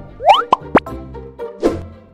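Short animated title jingle: music with cartoon sound effects, a quick rising glide just after the start, two short steep upward sweeps around half a second in, and a brief rush of noise near the end.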